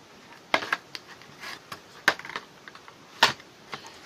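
Short, sharp plastic clicks and taps from handling a motorcycle headlight unit in its plastic surround. There are about five or six scattered clicks, the loudest about two seconds and just over three seconds in.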